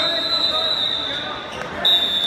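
Wrestling referee's whistle: a long, steady blast of about a second and a half, then a second, louder blast starting just before the end, over spectators' voices.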